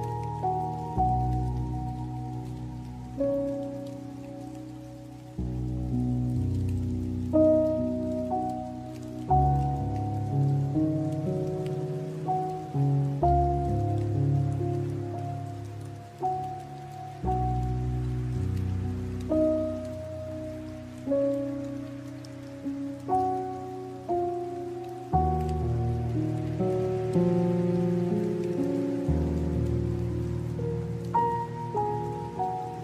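Slow, gentle piano melody of single notes that ring and fade over sustained low chords changing every few seconds, with a rain sound pattering underneath.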